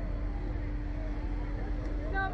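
A steady low rumble with a constant droning hum.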